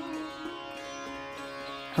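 Quiet background music: a steady drone of held tones, like Indian-style strings, with no speech.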